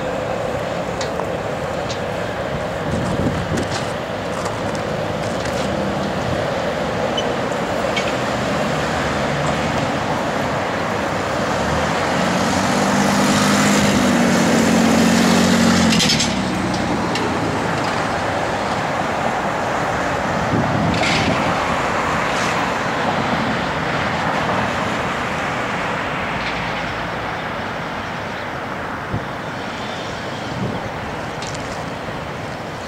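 Steady city street traffic noise. From about 12 seconds in, a louder vehicle engine with a low drone rises for a few seconds, then cuts off abruptly at about 16 seconds.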